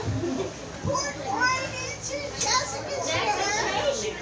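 Several people talking over one another, lively overlapping voices calling out.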